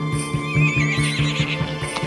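Soundtrack music with a fast, even pulsing beat, and a horse whinnying about half a second in.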